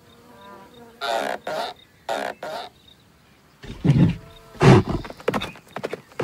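Cartoon bull sound effects: two short, sharp snorts about a second apart, then loud, deep bellowing roars in the second half.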